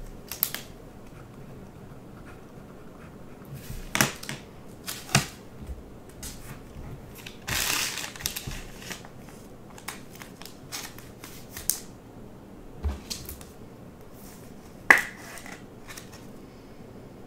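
Trading cards, a pen and plastic card holders being handled on a tabletop: scattered light taps and clicks, a short rustle a little before halfway, and a sharper click near the end.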